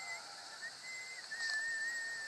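A thin, high whistling tone that steps between a few pitches and then holds one note, wavering slightly, for the second half. At the very start a voice trails off on a drawn-out "uh".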